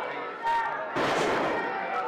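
A wrestler's body slamming onto the wrestling ring mat: a loud slam about a second in that trails off in the hall's echo, after a smaller knock about half a second in.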